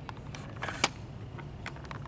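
Camera shutter clicks, several short ones with a louder click a little under a second in, over a low steady hum.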